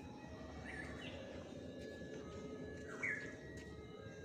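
A bird chirping faintly outdoors, two short falling calls: one just under a second in and a louder one about three seconds in.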